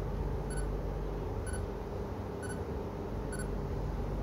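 Short, high electronic beeps repeating about once a second over a low, steady room hum.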